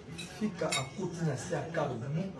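Cutlery and dishes clinking on a laid dining table, a few sharp clinks, under ongoing voices talking.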